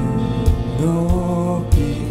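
Korean worship band with a vocal ensemble singing held, slowly moving notes over keyboard accompaniment, with a steady drum beat about every 0.6 seconds.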